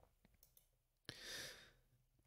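Near silence, with one short breath, a soft airy intake by the speaker, about a second in.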